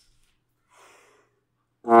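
A player's breath drawn in, about a second in, then near the end a trombone note starts, loud and steady, during false-tone practice.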